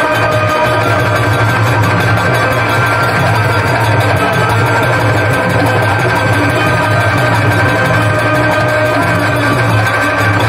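Live stage band playing an instrumental passage: electronic keyboards holding sustained chords over the accompaniment, loud and steady throughout.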